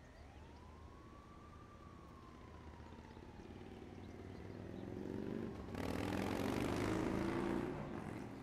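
Soundtrack effects: slow, wailing siren-like tones slide up and down. About six seconds in, a loud rush of noise swells in over them and cuts off sharply near the end.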